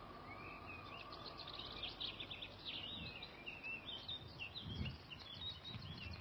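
Faint outdoor ambience of small birds chirping, many short quick calls over a steady background hiss. A couple of soft low thumps come about three and five seconds in.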